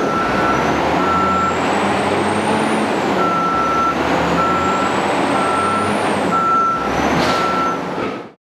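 Tamrock Toro 0010 underground mine loader's 13-litre six-cylinder diesel running steadily, with its reversing alarm beeping about once a second. A high whine slowly rises and drops back twice.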